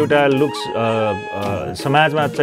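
A male voice singing a Nepali dohori folk song into a microphone, in a run of held, wavering notes that rise and fall.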